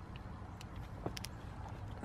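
A few faint clicks of a plastic case being snapped onto an iPhone, two of them close together about a second in, over a low steady rumble in the car's cabin.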